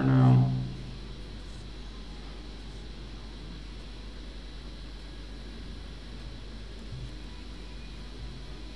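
A man's brief voiced murmur right at the start, then steady low electrical hum and room tone with a faint tick about seven seconds in.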